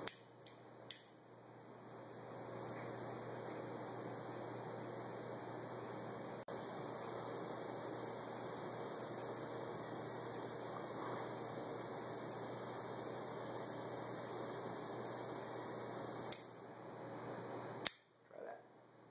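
Butane torch lighter: a few ignition clicks, then the flame jet hissing steadily for about fourteen seconds as it toasts and lights the foot of a cigar, with one brief break midway. It cuts off with a click, and another sharp click comes near the end.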